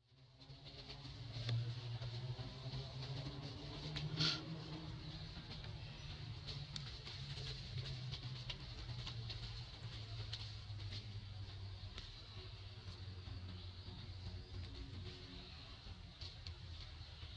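Outdoor field ambience fading in: a steady low hum with a faint high hiss, scattered light ticks and clicks, and one short sharp sound about four seconds in.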